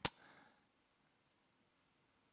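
A single sharp click right at the start, then near silence.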